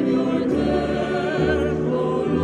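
Small mixed choir of men's and women's voices singing in harmony, with a low part coming in about half a second in.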